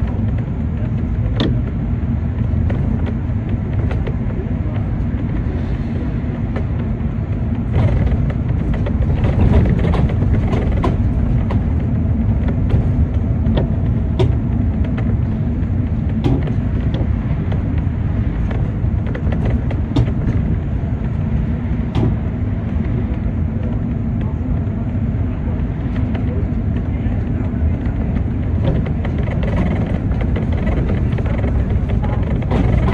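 City bus running in traffic, heard from inside: a steady engine and road rumble that grows louder about eight seconds in, with scattered sharp rattles and clicks.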